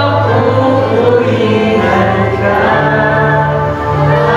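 Live worship band with voices singing together: held sung notes over a steady bass note that steps up in pitch about two-thirds of the way through.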